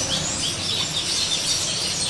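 Birds chirping repeatedly over a steady insect hum.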